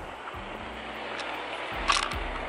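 Outdoor wind noise rushing on a handheld camera's microphone, steady throughout, with a short sharp noise near the end.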